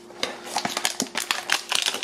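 A plastic-wrapped trading card pack being opened and handled, with a quick run of small clicks and crinkles as the cards are slid out of the wrapper, busier in the second half.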